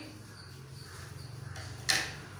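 A single sharp click of scissors just before the end, over a low steady hum.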